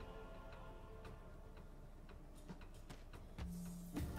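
Faint online slot game sound effects: a win jingle fading out, then light ticking clicks as the reels spin and land, with a short low thud near the end.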